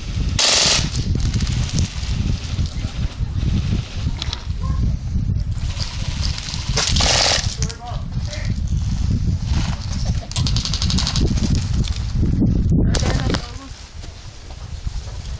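Bursts of automatic airsoft gunfire, the longest a rapid, evenly spaced clatter about ten seconds in, with shorter bursts near the start and about seven seconds in. Under it runs a steady low rumble of wind on the microphone.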